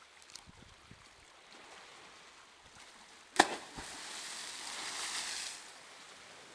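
A person hitting the sea in a "bomb" (cannonball) jump from high rocks: one sharp loud smack a little past halfway, then about two seconds of hissing spray and foam that dies away.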